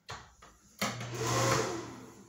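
Bathroom ceiling exhaust fan switched on a little under a second in, running with a steady motor hum and a rush of air, fading near the end.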